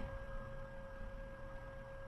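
A faint, steady electrical whine at two constant pitches, a middle tone and a higher one, over low background noise.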